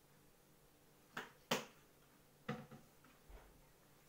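Four light clicks and taps as painting materials are handled on a table, the loudest about a second and a half in.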